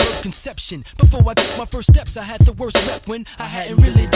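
Mid-1990s underground hip-hop track playing: a rapped vocal over a beat of heavy kick drums and sharp snare hits.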